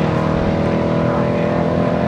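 A car engine running in a steady drone, its pitch rising slowly.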